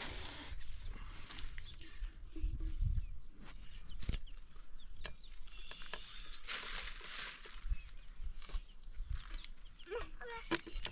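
Outdoor handling sounds as wild green stalks are sorted between a metal pot and an aluminium tray: scattered clicks and knocks, with a longer rustle about two thirds of the way in. A low wind rumble runs underneath, with a few faint animal calls.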